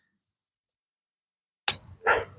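A golf club striking a golf ball on a long chip shot: a single sharp click near the end, after near silence.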